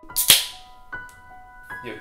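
A sudden sharp crack about a quarter second in, the loudest moment, followed by background music with held notes.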